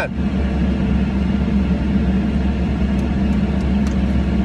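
Car engine idling steadily, heard from inside the cabin as a low, even hum. A few faint clicks come near the end.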